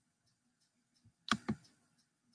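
Two sharp clicks in quick succession, about a fifth of a second apart, a little over a second in.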